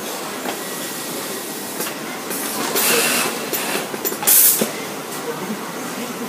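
Compressed air hissing from an automated sewing unit's blowing tube, which blows the sewn parts out from the top. There are two blasts, a longer one about two and a half seconds in and a short, louder one about four seconds in, over steady machine noise.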